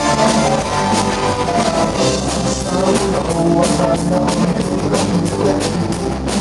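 Live rock band playing: electric guitars, bass guitar and drum kit with a steady beat.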